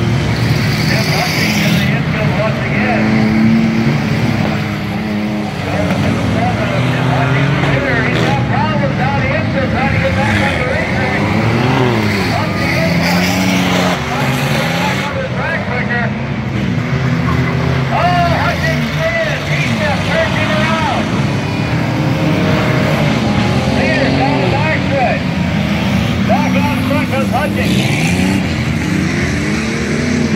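Several race cars' engines running together, revving up and down in pitch as the cars circle the track and pass by. Voices are heard over them.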